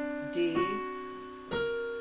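Digital piano chords played with the right hand: a jazz D7 voicing with a sharp fifth. A note sounds about half a second in, and a fresh chord is struck about a second and a half in; each rings and slowly fades.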